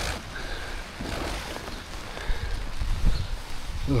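Tent door zip pulled open and fabric rustling as someone climbs into a canvas-style hot tent, over a steady hiss of heavy rain and low wind rumble on the microphone.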